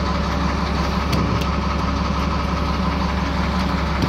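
Steady low mechanical hum with a constant drone at a gas station fuel pump, unchanging throughout.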